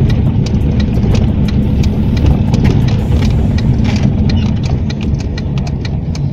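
Car driving on a wet road, heard from inside the cabin: a steady low engine and tyre rumble, with irregular light clicks over it several times a second.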